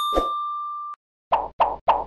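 Logo sound effect on a news channel's end card. A steady electronic tone with overtones holds for about a second and cuts off suddenly, with a short low hit just after it begins. It is followed by three short, quick sound-effect hits about a third of a second apart.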